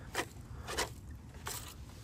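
A few soft scrapes and rustles of hands handling a foam-and-plastic model plane and the camera, with no motor running.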